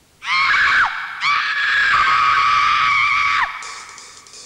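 Two high-pitched screams, a short one and then a longer held one of about two seconds, each dropping in pitch as it cuts off.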